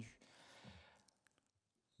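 Near silence in a pause in speech: a faint breath at a desk microphone fading out over the first second, a few faint clicks, then complete silence.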